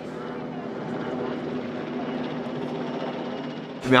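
Helicopter flying, a steady engine-and-rotor drone that holds one even pitch and cuts off abruptly near the end.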